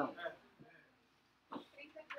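Speech: a word spoken at the start, then a short pause with a single sharp click about one and a half seconds in, followed by faint voices.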